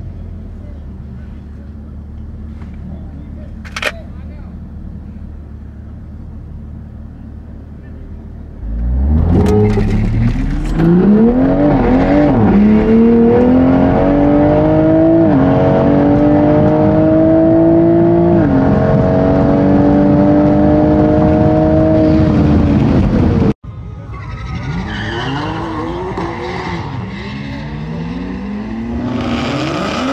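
Inside the cabin of an MKV Toyota Supra: the engine idles at the start line, then launches about nine seconds in and runs hard up through the gears, its pitch climbing and dropping back at each of several upshifts. Midway through the run the sound cuts abruptly to a quieter, more distant car accelerating down the strip.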